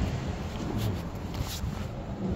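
Outdoor ambience heard while walking with a handheld camera: a steady low rumble on the microphone, with a few faint clicks around the middle.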